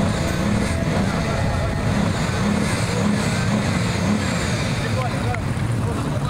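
Bugatti Veyron's quad-turbo W16 engine running steadily, with indistinct voices.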